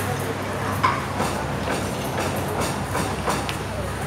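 Spoon and fork clicking against a ceramic plate several times while eating, over a steady low rumble and background chatter of a busy restaurant.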